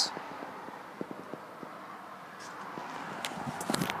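Quiet, still car cabin with scattered faint clicks and rustles from the phone being handled and moved about. The clicks grow busier near the end.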